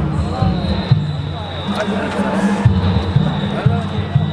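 Danjiri festival drumming: heavy taiko drum strikes in an uneven repeating rhythm, with many voices shouting over it and a high steady tone running through.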